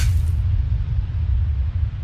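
Deep rumble of an intro sound effect, the tail of a crash-and-boom logo reveal, slowly fading away.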